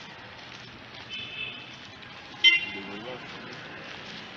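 Street ambience with a short, loud car-horn toot about two and a half seconds in, after a fainter high tone about a second in; indistinct voices follow the toot.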